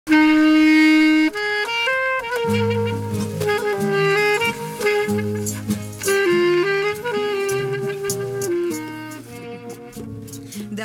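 Saxophone playing a slow melody, opening on a long held note, with guitar accompaniment coming in about two and a half seconds in.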